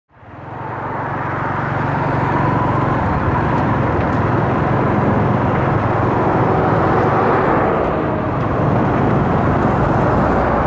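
Steady engine and road noise from a vehicle travelling along a highway, fading in over the first second.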